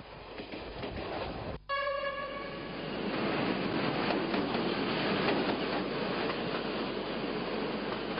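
Rail noise of a passing train, then a single train horn blast about a second long near two seconds in, followed by steady train rumble.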